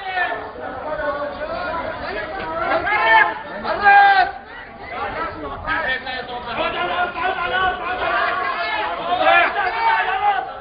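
Several men talking and calling out over each other, with louder shouts about three and four seconds in.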